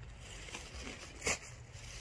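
Faint rustling of a person moving and handling gear, with a brief scrape a little past the middle.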